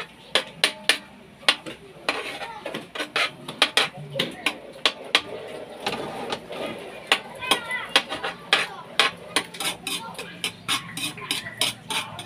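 Metal spoon clinking and scraping against a metal wok while stirring melting butter, in rapid, irregular sharp clinks.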